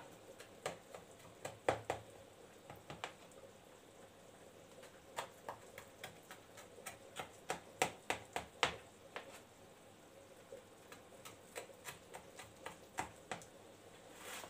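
Knife scoring soft vegetable dough in a round metal baking tray: faint, irregular clicks and light scrapes as the blade touches the tray, busiest a few seconds before the middle and again near the end.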